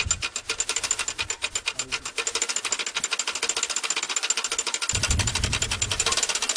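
A clicking mechanism ticking in a fast, even run, with a low rumble joining about five seconds in.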